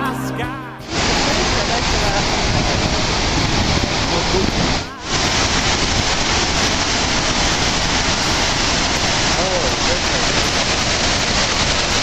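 Steady roar of a large waterfall, a constant heavy rush of water that cuts in sharply about a second in and drops out briefly near the middle. Music plays at the very start.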